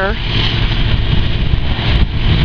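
Fire truck engine running steadily as a low, even hum while it pumps water to a hose line.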